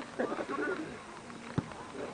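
Shouting on a football pitch in the first second, then a single sharp thud of a football being kicked about a second and a half in.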